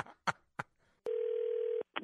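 A steady telephone tone, one held note lasting under a second, heard over a phone line as if the call has just been hung up. A few short bits of voice or chuckling come just before it.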